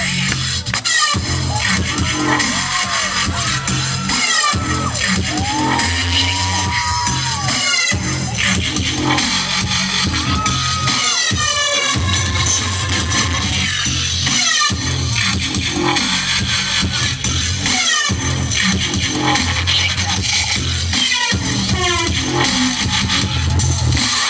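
A DJ scratching records on turntables over a loud, bass-heavy electronic beat through the club's sound system, with quick back-and-forth scratch sweeps. The beat drops out for an instant every few seconds as the DJ cuts it.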